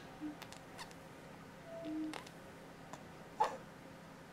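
Baby making brief soft squeaky coos: a short one just after the start and a longer one near the middle. A few small clicks fall between them, with a sharper click about three and a half seconds in.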